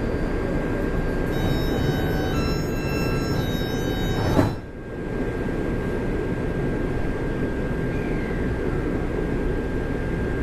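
Interior of a Taipei MRT metro car standing at a platform: a steady hum of the car's equipment with a constant high tone, an electronic chime of several notes for about three seconds, then a single knock about four and a half seconds in, typical of the doors shutting before departure.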